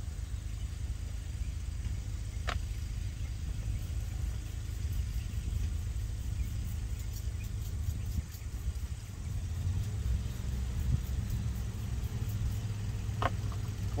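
A steady low engine drone, typical of a lawn mower running at a distance, with two short sharp clicks, one about two and a half seconds in and one near the end.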